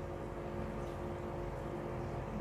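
Steady, even hum of an aquarium air pump running the tank's sponge filter.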